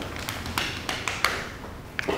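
Scattered light taps and short rustles from people moving on a rubber gym floor.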